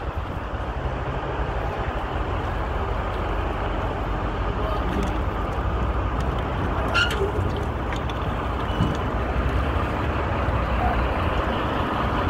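Steady low vehicle rumble with outdoor noise, and a single sharp click a little past halfway.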